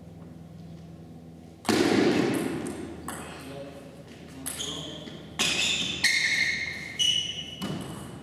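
A player's loud shout about two seconds in, then a table tennis ball bouncing on the table and bat between points: about six short clicks, each with a brief high ping.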